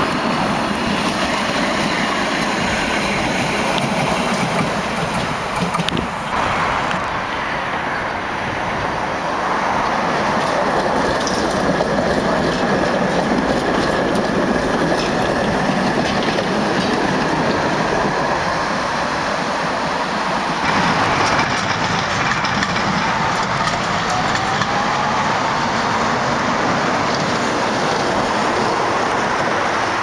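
Tatra trams running along the track: a steady rumble and rattle of steel wheels on rails, with clickety-clack over rail joints. A faint rising whine comes in late on.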